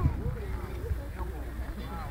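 Indistinct voices talking, with a low steady rumble underneath.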